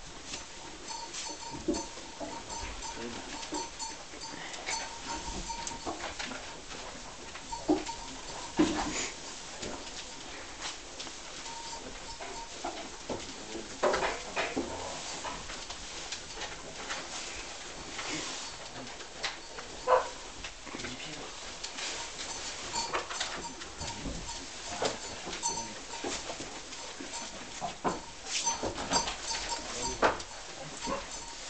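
Barn stall sounds: a weanling Paint Horse colt shifting his hooves in straw and dirt bedding while being handled, with scattered rustles and knocks and a few short animal calls, the clearest about 14 and 20 seconds in.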